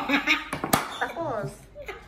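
Laughter, with one sharp click about three-quarters of a second in from a plastic dama piece knocking on the board.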